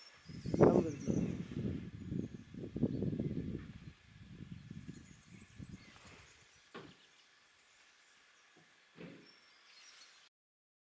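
Wind buffeting the microphone, a gusty low rumble that is strongest for the first few seconds and then dies away. A sharp click and a soft knock follow near the end.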